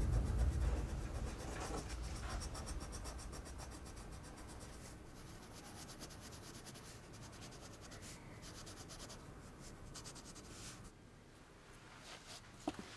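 A pencil scratching on paper in quick, faint strokes as someone draws, thinning out in the second half. A low rumble fades away at the start.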